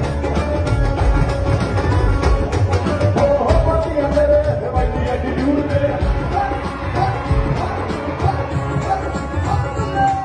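Live Punjabi pop music played through a PA: a male singer sings into a microphone over a band with drum kit and keyboard, with a steady beat.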